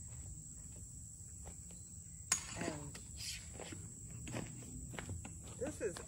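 Footsteps on a dirt campsite with a steady, high cricket chorus behind them. A single sharp click about two seconds in is the loudest sound.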